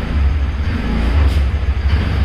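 Motor scooter engine running with a low rumble as the scooter is ridden slowly out of its parking spot.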